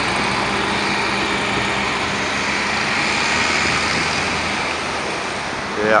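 Steady road traffic noise: engines running and tyres on the road, with a constant low engine hum that eases slightly near the end.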